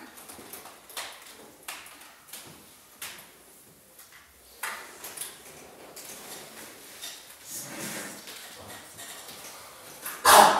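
Scattered light clicks and knocks at irregular intervals, with a sharper knock about halfway through and a soft rustle near the end.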